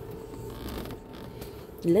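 A steady hum over low background noise, with a soft hiss for about half a second near the middle.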